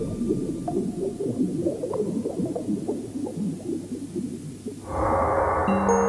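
Film soundtrack: a dense, low rumbling texture that shifts without a steady pattern, then music with held notes starts abruptly about five seconds in.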